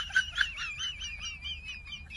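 A high, warbling, bird-like whistle that wavers quickly up and down in pitch and slides slightly lower, with a few short chirps in the first half-second.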